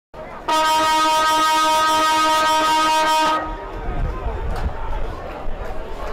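Football ground siren sounding one steady note for about three seconds, starting about half a second in, the signal that starts the quarter. After it cuts off there is low rumbling background noise.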